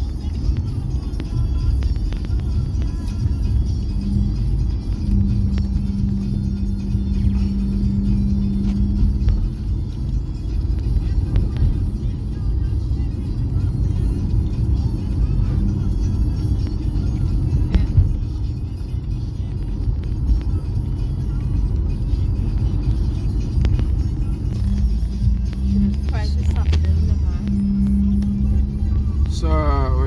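Car engine and tyre road noise heard from inside a moving car: a steady low rumble, with a steady hum that comes in a few seconds in, fades, and returns near the end.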